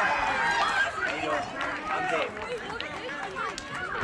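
Overlapping shouts and calls from several young voices at a youth softball game, with no clear words, loudest in the first second.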